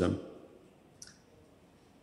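One short, faint click about a second in, during a pause in a man's speech, over quiet room tone.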